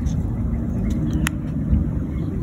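Steady low outdoor rumble, with a single sharp click a little over a second in as a push button on the WIO Terminal is pressed to change the screen.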